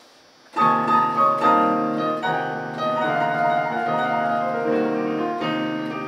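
Piano chords played on an electronic keyboard, starting about half a second in and moving through several chord changes with sustained notes.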